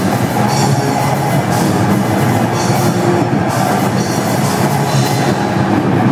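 Death-thrash metal band playing live: electric guitars over a drum kit with repeated cymbal crashes, loud and unbroken throughout.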